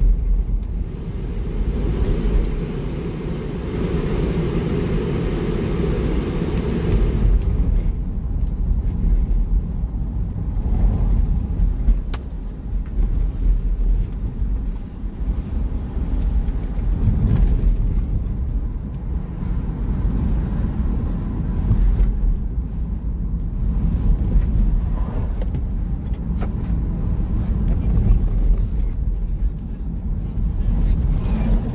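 Car interior road noise while driving: a steady low rumble of tyres and engine, with a brighter hiss that drops away about seven seconds in.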